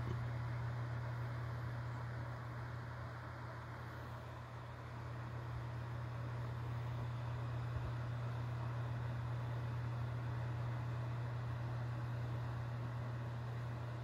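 Room tone: a steady low hum under a faint even hiss, with nothing else standing out.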